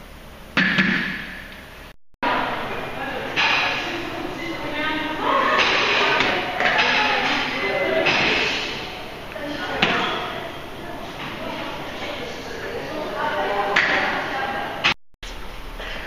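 A barbell loaded with bumper plates thuds onto a wooden lifting platform about half a second in, ringing briefly in the hall. Then indistinct voices talk in the background, with another thud about ten seconds in.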